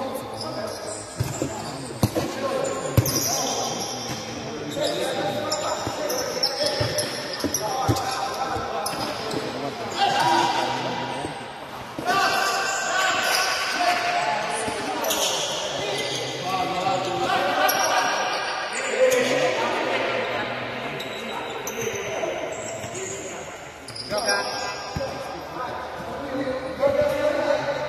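Futsal ball being kicked and bouncing on a hard indoor court, with players shouting during play, all echoing in a large hall.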